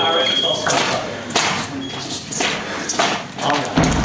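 Electric fencing scoring box giving a steady high-pitched tone that signals a touch, cutting off suddenly about half a second in. After it come scattered sharp taps and thumps from the fencers' feet and blades on the piste, and near the end spectators call out "oh" several times.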